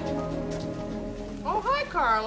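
An orchestral string cue holding its closing notes, which die away about a second and a half in; then a voice with sweeping pitch begins near the end.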